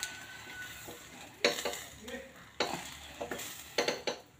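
Whole brinjal roasting directly over a gas burner flame: the skin sizzles with several sharp pops and crackles, the loudest about halfway through. Near the end there is a knock as the brinjal is turned on the burner grate.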